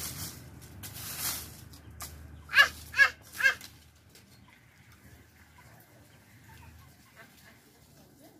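Three short, loud animal calls in quick succession, about half a second apart, a few seconds in. Before them, dry leaves rustle and crunch underfoot.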